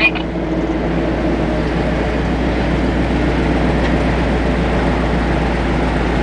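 Steady car noise heard from inside a car's cabin: an engine running evenly under a low hum, with no sudden events.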